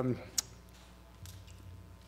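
A pause in speech with a single sharp click about half a second in, over faint room hum.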